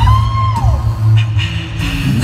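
Live a cappella pop music over arena speakers: a deep sung bass line, vocal beatbox percussion, and a high held sung note that arcs up and falls away in the first second.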